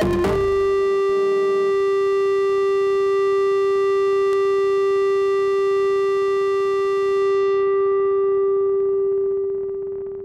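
Eurorack modular synthesizer: the rhythmic pattern cuts out at the start and a single sustained drone note is left ringing. Its bright upper overtones die away about seven seconds in, and the note fades out near the end.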